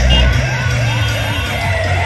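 Siren-style sweep effect blasted from a DJ truck's loudspeaker stack: a run of quick rising whoops, about four a second, under a long falling tone, while the dance track's heavy bass drops back.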